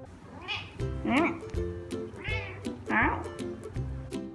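Ragdoll cat meowing four times, each call rising and falling in pitch, over background music.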